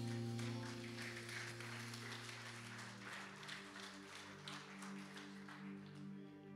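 Soft sustained keyboard pad chords from a worship band, shifting to a new chord about three seconds in, under light scattered applause that dies away near the end.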